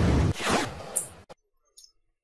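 Camcorder handling noise: a loud rasping rub on the microphone as the camera is swung round, cutting off suddenly about a second in.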